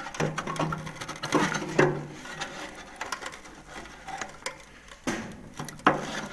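Rusty steel battery-compartment floor panel of a Leyland Moke being wrenched loose by hand: an irregular string of metallic clicks, scrapes and rattles as the cut panel flexes against a remaining weld, with one louder knock near the end.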